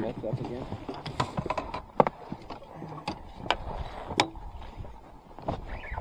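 Irregular knocks and clicks from a landing net and fishing gear being handled in a small inflatable boat, the loudest sharp knock about two seconds in.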